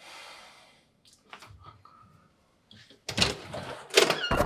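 A short hiss at the start and a few faint clicks, then about three seconds in a loud clatter of knocks as the apartment door's lock is worked and the door is pulled open.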